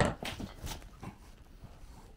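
Short knocks and clatters of tools being handled on a shower floor: one sharp knock at the start, then four or five lighter ones over the next second.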